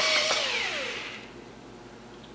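DeWalt cordless drill driving a screw through a shotgun recoil pad into the plastic buttstock, its motor whine rising and falling in pitch, then dying away about a second in.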